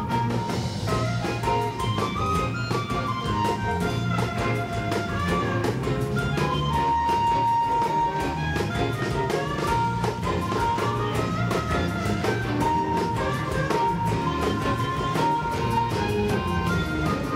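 Live blues band with a harmonica solo: an amplified harmonica plays a melodic lead line over guitar and a drum kit keeping a steady beat. The harmonica holds long notes about seven seconds in and again near the end.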